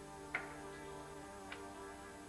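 Soft dramatic background music of sustained chords that shift pitch partway through, with two sharp clicks a little over a second apart, the first one louder.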